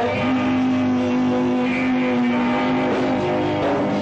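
Live rock band playing an instrumental passage without vocals: a lead electric guitar slides up into one long held note over the band.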